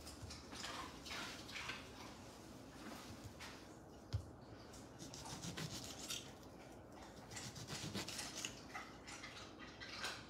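Faint kitchen handling sounds of an orange being cut with a knife: soft scraping and rubbing, with one light knock about four seconds in.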